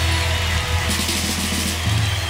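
Instrumental passage of Christian praise music, with sustained bass and no singing.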